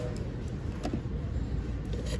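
Steady low background rumble in a shop, with a few faint light clicks.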